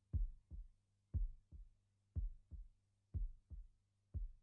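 Heartbeat: a low double thump, the first beat louder and the second softer, repeating about once a second.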